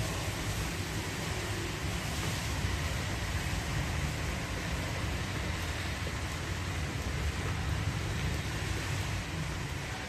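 Steady low rumble and hiss of wind buffeting the microphone, with no distinct heel clicks standing out above it.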